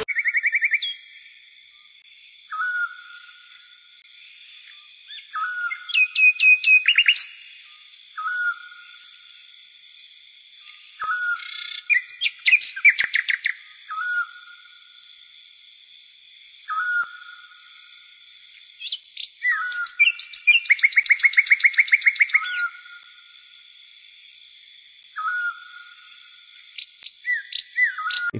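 Birds chirping: short single chirps every couple of seconds, broken by a few bursts of rapid trills, over a faint steady high hiss.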